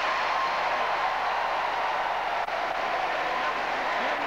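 Audience applauding steadily after a speech.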